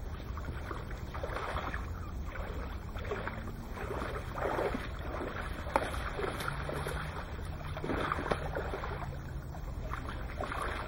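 Water splashing and sloshing in irregular bursts around a landing net as a hooked pike is drawn in and netted, with a sharp click about six seconds in. A low steady rumble of wind on the microphone runs underneath.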